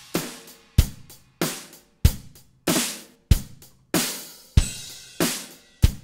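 Multi-track acoustic drum loop playing a steady beat: kick and snare alternate about every 0.6 s with cymbal over them. The snare hits are layered with an electronic snare sample from Reason's Kong drum module, triggered by the original snare through a Pulverizer follower.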